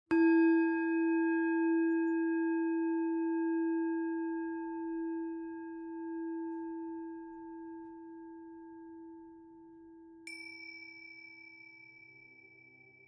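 A singing bowl struck once, ringing as a low tone with several higher overtones and slowly fading away. About ten seconds in, a higher-pitched bell is struck once and rings on.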